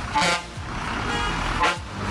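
Two short honks of a bus horn, about a second and a half apart, over the low running of the bus's engine as it passes close by.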